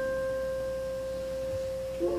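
A woodwind instrument holding one long, pure note at a single pitch, slowly fading.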